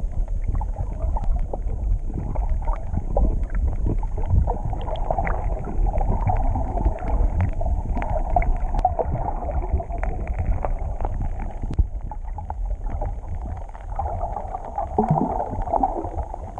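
Muffled underwater noise of a submerged camera: a steady low rumble of water moving around the housing, with many faint scattered clicks and crackles.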